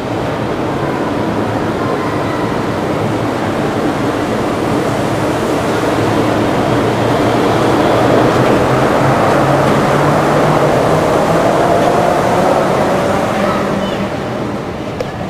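Walt Disney World monorail train passing overhead on its elevated beam inside a large, echoing atrium: a steady rushing run that builds to its loudest about halfway through, then eases as the train moves off.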